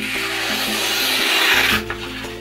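Small Roselli Bear Claw fixed blade in ultra-high-carbon steel slicing through a held sheet of paper with its sharp factory edge: one continuous papery rasp that stops near the end.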